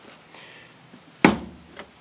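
A single solid knock, a little over a second in, as the Farmall H's cast-iron three-brush generator is set down on its side on a bench among hand tools, with a faint click shortly after.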